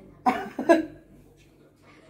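Two brief, cough-like vocal bursts from a woman within the first second, followed by a quiet room.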